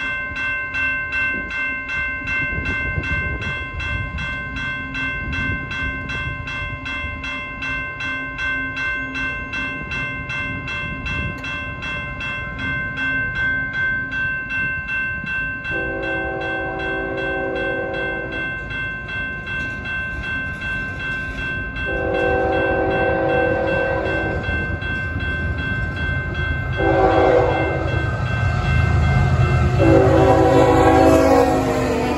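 Grade-crossing warning bell ringing rapidly and evenly for the first two-thirds, then the horn of an approaching CN GE freight locomotive sounding the crossing signal: two long blasts and a short one, with the final long blast beginning at the very end. Beneath it the diesel rumble of the locomotives running in notch 8 grows louder as the train nears.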